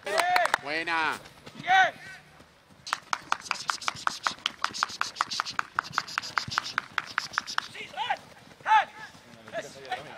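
A fast, even run of light taps, about five a second, during a football hurdle agility drill, with short shouted calls just before and near the end.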